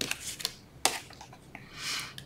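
Cardstock and a clear ruler being handled on a cutting mat: a sharp click at the start and a louder one a little under a second in, a few small ticks, then a rustle of paper sliding near the end.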